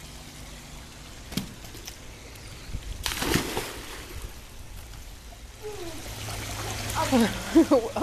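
A big splash into a swimming pool about three seconds in, as a body jumps in, followed by churning, sloshing water. Voices rise near the end.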